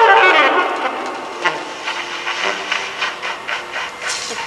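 Jazz quartet's free improvisation dying away: wavering high tones fade out in the first half second, then scattered soft taps and clicks with a faint cymbal hiss from the drum kit, growing quieter.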